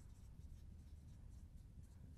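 Faint scratching of a dry-erase marker writing on a whiteboard.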